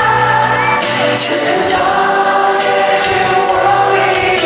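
Live pop ballad: a male lead singer holding long sung notes over the band's backing, played through a concert sound system. The pitch shifts to a new held note about a second in.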